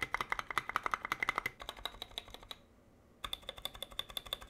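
Custom 60% mechanical keyboard (Tealios v2 linear switches, clipped and lubed stabilizers) with its spacebar and other stabilized keys pressed in quick succession: a fast run of crisp clacks, a brief pause about two and a half seconds in, then another run of keypresses with a slightly brighter tone.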